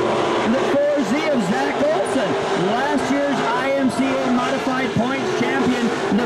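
Several dirt-track race cars' engines running hard, their pitch repeatedly dipping and climbing again as the drivers lift and get back on the throttle through the corners.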